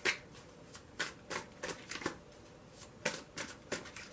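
A deck of tarot cards being shuffled by hand: a run of short, sharp card slaps, uneven, roughly three a second.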